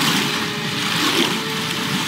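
TV episode soundtrack: dramatic music over a dense, steady rush of surging water and battle effects.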